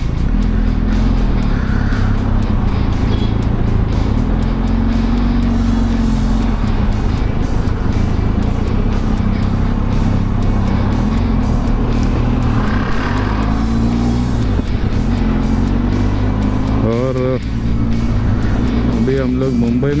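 Benelli TRK 502X's parallel-twin engine running under the rider, the revs rising and falling a few times as the bike pulls away and rides on through traffic.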